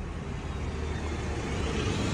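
Road traffic on the street: a steady rush of car tyre and engine noise that swells slightly toward the end.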